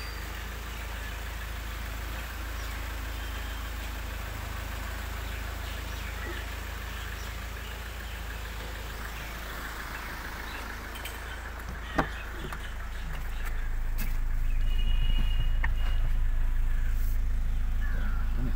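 Mahindra Scorpio's engine idling steadily, with a single sharp click about twelve seconds in. The idle grows louder over the last few seconds, heard from inside the cabin.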